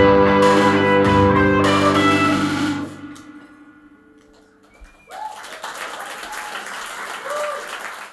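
Live indie band with electric guitars and keyboard holding a final chord that rings out and fades away about three seconds in. After a short lull, audience applause starts about five seconds in, with a few shouts.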